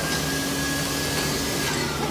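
A steady mechanical whir with a thin high whine over it, both cutting out near the end, against restaurant background noise.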